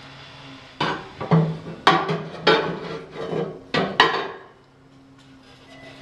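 Metal baffle plate clanking and knocking against the inside of a wood-burning stove's firebox as it is worked into place, a series of sharp ringing knocks over the first four seconds, then quiet.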